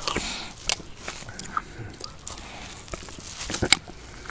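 Close-miked mouth sounds of eating a spoonful of ice cream from a root beer float: soft smacking and chewing with a few sharp clicks, the loudest cluster of clicks near the end.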